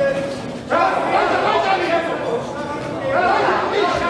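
Several people shouting encouragement at the boxers, raised voices overlapping in an echoing sports hall, with loud bursts of shouting about a second in and again near the end.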